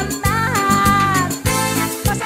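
A cumbia band playing an instrumental passage: a lead melody with sliding notes and a long held note over bass and a steady beat, with a cymbal wash about a second and a half in.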